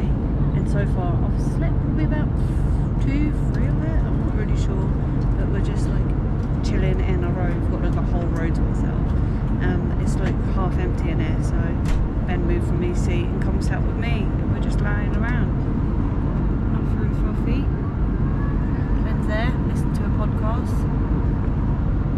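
Jet airliner cabin noise: a steady low drone of engines and airflow, with a woman's voice talking quietly over it.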